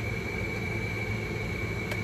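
Room air conditioner running: a steady hum with a thin, constant high whine.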